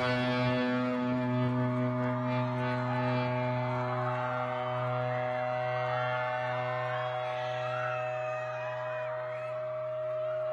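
Live rock band holding one steady chord through a concert sound system, with a crowd's voices wavering over it.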